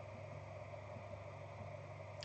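Faint room tone: a steady low hum with light hiss, and no other sound.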